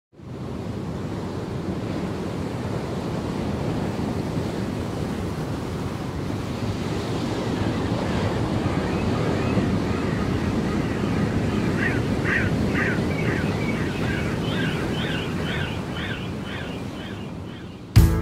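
Steady rush of ocean surf, fading in at the start. In the second half a run of short, high-pitched calls repeats about three times a second over it.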